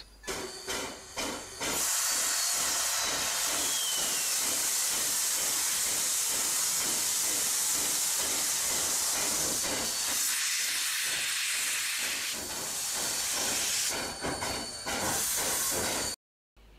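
Steam from a steam-powered crane hissing steadily, with a faint regular beat underneath. The hiss comes in about two seconds in and eases off near the end.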